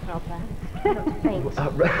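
A man laughing. The laughter grows louder near the end.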